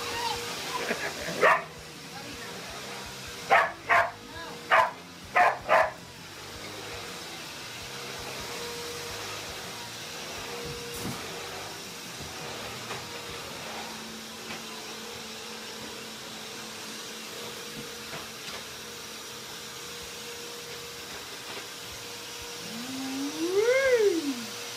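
A dog barking: five short, sharp barks in quick succession a few seconds in, over a steady hum.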